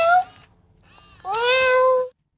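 Robotic pet cat meowing twice: a short rising meow that ends just after the start, then a longer meow about a second in that rises and then holds its pitch.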